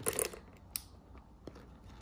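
Chocolate chips dropping a few at a time from a bag into a small plastic container on a kitchen scale: a short patter of light clicks at the start, one sharper tick a little under a second in and a faint one later.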